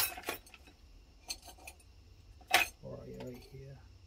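Small brass carburetor jets clinking against each other and the bench as they are picked out by hand: a clatter that stops just after the start, a few faint clinks, then one sharper click a little past halfway.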